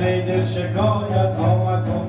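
Live Persian classical music: a voice singing a melodic line over a string instrument.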